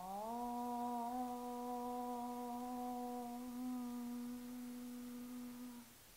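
A woman's voice chanting a long Om: one sustained note that slides up briefly at the start, then holds steady for nearly six seconds before stopping.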